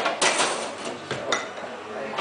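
Glass beer glasses clinking against each other as they are set down among full glasses on the bar and lifted back to the tap: a few sharp clinks, two close together at the start and another a little past halfway, over bar chatter.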